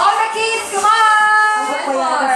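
A high voice singing long held notes, with slight wavers in pitch.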